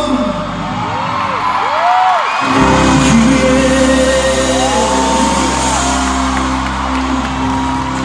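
Live pop ballad heard from the audience in a large arena: a band's sustained keyboard and bass chords under a male singer's voice, with audience whoops. The bass drops out for about two seconds near the start, then comes back in.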